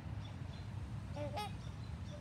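A swan gives one short call about a second and a half in, over a faint steady background.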